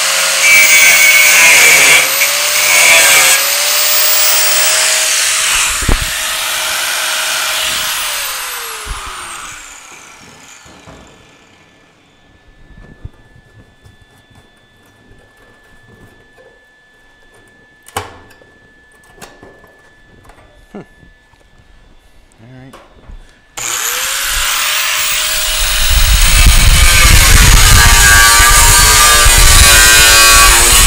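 Angle grinder grinding a tack weld off sheet steel, its motor whine dipping under load; about eight seconds in it is switched off and winds down. After a quiet stretch with a few light clicks and taps, it is switched on again near 24 s, spins up and grinds steel loudly again.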